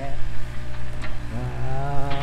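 Excavator diesel engine running at a steady low hum, with a drawn-out voice-like sound over it in the second half.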